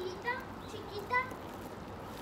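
Faint children's voices calling out twice in the background, short high-pitched cries with no clear words.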